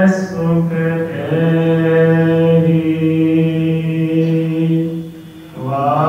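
A Sikh granthi's voice chanting Gurbani from the Hukamnama in a slow, drawn-out recitation, holding long notes at a steady pitch. The voice breaks off briefly about five seconds in, then resumes.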